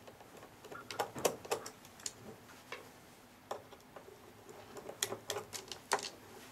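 A screwdriver backing small screws out of a plastic instrument housing, with the loose screws set down on the tabletop: scattered small clicks and taps, a quick run of them about a second in and another near the end.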